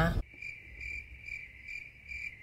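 Cricket chirping sound effect: a steady high trill that pulses about twice a second, cut in abruptly over a pause in speech in place of the car's own background sound, the usual 'crickets' gag for an awkward silence.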